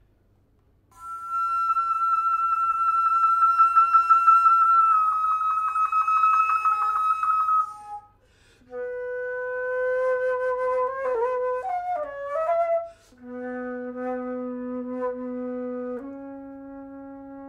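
Solo concert flute playing: after a second of quiet, a long high held note with fast wavering steps slightly lower, then after a short break comes a lower held note bending up and down in pitch, dropping to a very low note near the end.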